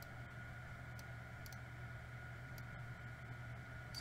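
About five faint, scattered clicks from a computer keyboard and mouse while code is being edited, over a steady low hum and hiss.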